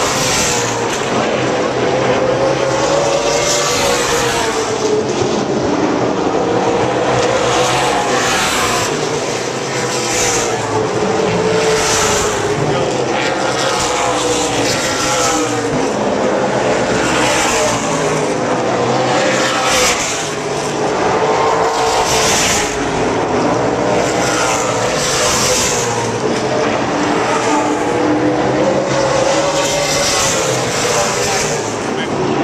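Late-model stock car engines running laps around the oval, a loud continuous drone whose pitch rises and falls as cars come past every couple of seconds.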